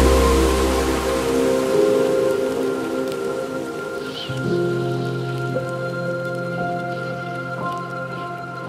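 Chillstep music between tracks: held synth pad chords over a soft, rain-like hiss. A deep bass fades out in the first second or so, and the whole gradually gets quieter.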